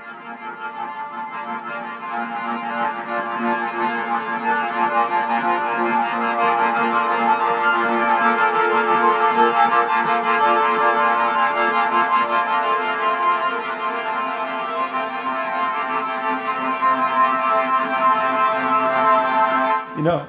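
Sampled solo violin from the 8Dio Studio Solo Violin library, played from a keyboard with its two-bow sul ponticello tremolo articulation: a held cluster of notes that swells over the first few seconds and then holds steady.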